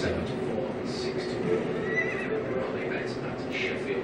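Centurion Free Spins slot machine's game sound effects as the reels spin and stop on a small win, including a horse whinny and hoof clip-clop.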